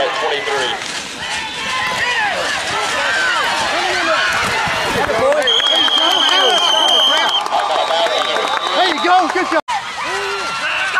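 Football crowd shouting and cheering, many voices overlapping, with a referee's whistle blowing one long steady blast of about two seconds a little past halfway. The sound cuts out for a moment near the end.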